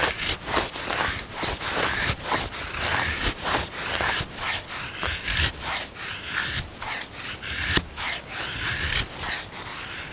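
A Battle Horse Knives Battlelore knife shaving thin curls down a split wooden stick to make a feather stick: a quick, steady run of short scraping strokes of steel on wood.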